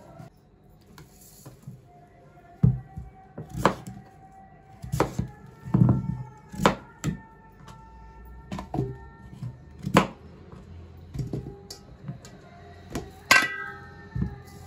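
A kitchen knife chopping raw pumpkin on a plastic cutting board: about nine sharp knocks at irregular intervals. Soft music with held notes plays underneath for the first part.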